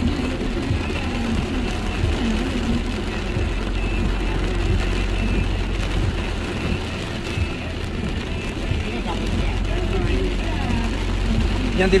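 Steady low rumble of a car's engine and running gear heard from inside the cabin while driving.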